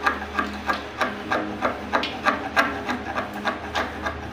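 Hand chisel blade scraping along the edge of a WPVC door frame, paring off thin shavings in short, rhythmic strokes at about three a second.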